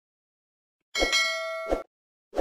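A sound-effect bell chime: a bright, ringing ding with several steady tones about a second in, lasting under a second, with a soft thump at its start and another just before it cuts off.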